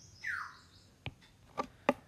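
Stylus clicking against a tablet screen while writing, a few sharp taps in the second half. About a quarter second in comes a short high chirp that falls in pitch.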